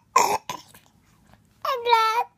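A baby vocalizing: a short cough-like splutter near the start, then about a second and a half in a high-pitched squealing babble whose pitch falls slightly.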